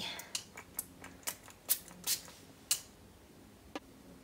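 A pump-spray bottle of Elemis Soothing Apricot Toner being sprayed: a run of short, soft hissing spurts, about two a second, with one more near the end.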